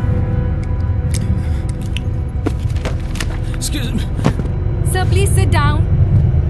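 Film soundtrack inside an airliner cabin: a steady low rumble under background music, with scattered clicks. About five seconds in comes a short pitched sound, possibly a voice, that bends up and down.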